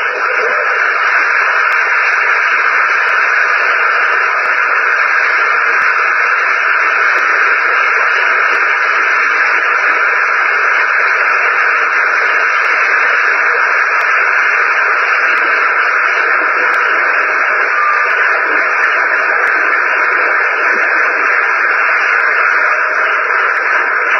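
Audience applauding steadily, heard through a narrow, hissy old recording that makes the clapping sound like a wash of noise. The applause stops just at the end.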